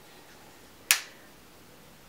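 A single sharp click about a second in, from makeup packaging being handled, against quiet room tone.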